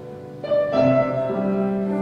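Piano playing a slow church prelude. A soft chord dies away, then new notes are struck about half a second in and held, ringing on.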